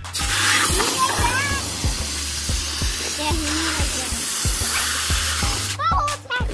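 Garden hose spray nozzle spraying water into a plastic bucket: a steady hiss that cuts off suddenly near the end. Background music with a steady beat plays under it.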